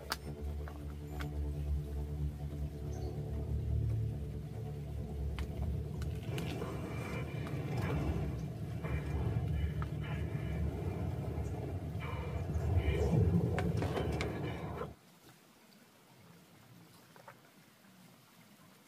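Film soundtrack playing through a tablet's small speaker: music over a low rumble. It cuts off suddenly about three-quarters of the way through, leaving near silence.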